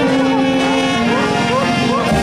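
Music with long, steady held notes forming chords, with voices and a vehicle mixed in underneath.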